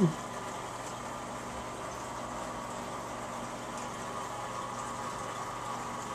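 Steady hum of the aquarium's water pumps driving the tank's current.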